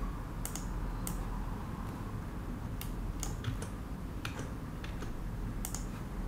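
Computer keyboard keys being pressed one at a time, about eight separate clicks at irregular intervals over a low steady hum.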